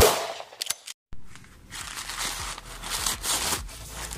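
The fading end of electronic intro music, then, about a second in, brown paper crinkling and rustling with small crackles as it is handled.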